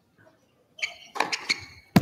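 A tennis serve: a few short, light knocks, then a single loud, sharp crack of the racquet striking the ball near the end, the serve that wins the match with an ace.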